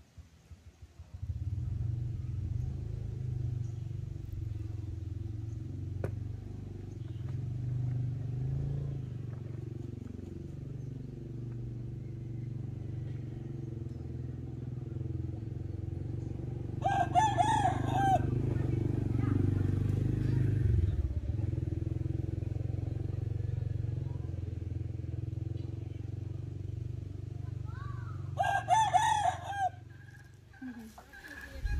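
A rooster crowing twice, once just past the middle and once near the end, over a steady low engine hum.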